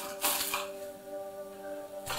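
A knife slicing through crisp Napa cabbage on a wooden board, with a crunchy cut or two in the first half-second, over steady instrumental background music.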